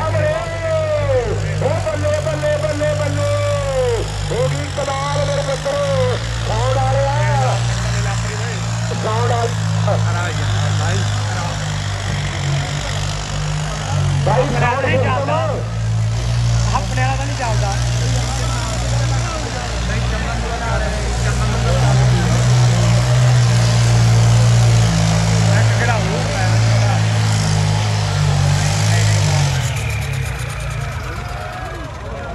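Tractor diesel engines running hard, their note swelling and easing, with people's voices over them.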